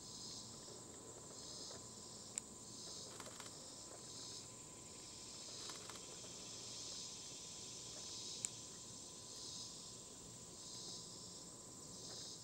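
Faint outdoor insect chorus: a steady high buzzing that swells in pulses about once every second or so. Two faint sharp clicks stand out, one a couple of seconds in and one past the middle.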